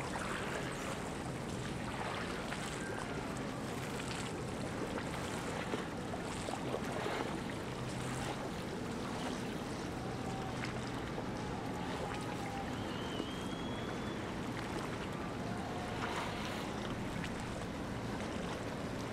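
Open-water ambience: a steady wash of wind and water with the low drone of motorboat engines running.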